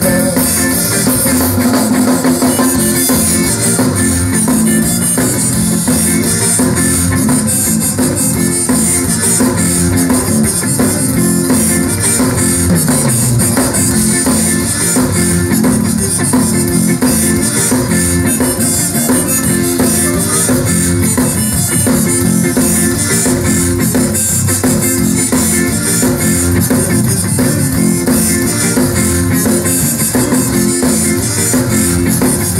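Live zydeco band playing through a loud PA: piano accordion, electric guitar and drum kit, with a steady beat and no singing heard.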